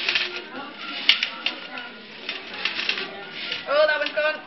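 Hen's eggs rattling and clicking against each other in a shaken round sieve, a rapid irregular clatter of shells knocking. This is egg shackling, where the eggs are shaken until their shells crack.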